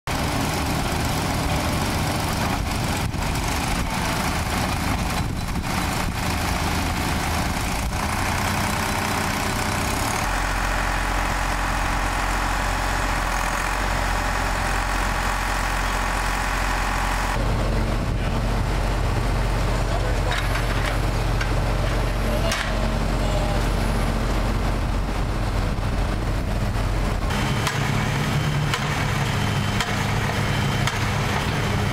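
Diesel engine of a crawler-mounted boring rig running steadily while it drills, its pitch and load shifting about ten seconds in, again around seventeen seconds and near the end.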